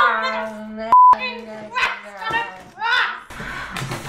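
A woman shrieking and wailing in high-pitched frustration, with no words. About a second in, a short censor bleep replaces everything else. Near the end the voice stops and only quieter room noise is left.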